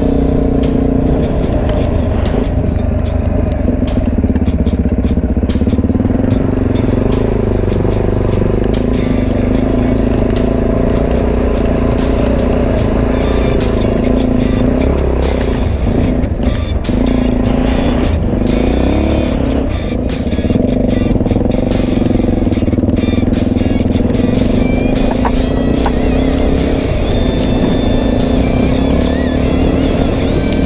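Suzuki DRZ400E's single-cylinder four-stroke engine running steadily as the dirt bike is ridden over sand and through shallow water, with background music over it.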